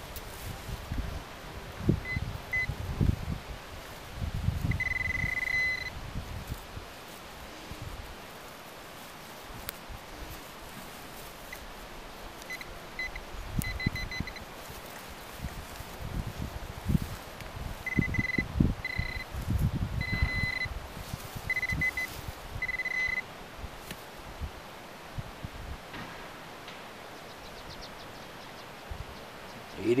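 Metal-detector pinpointer beeping as it closes on a coin in a freshly dug hole: short high beeps and one longer steady tone, then a run of beeps later on. Under and between them, a digging knife and gloved hands thud and scrape in soil and grass.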